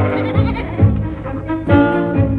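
Sheep bleating over orchestral background music with a steady bass beat about two to three times a second.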